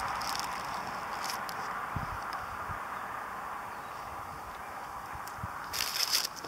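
A person chewing a bite of hamburger, with a few faint soft thuds over a steady background hiss; near the end the paper wrapper crinkles briefly.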